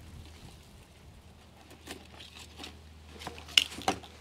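Hands handling a monstera cutting in a bucket of water, pulling at its soaked sphagnum moss: faint rustling and squishing, with a few sharp clicks and knocks near the end, the loudest about three and a half seconds in.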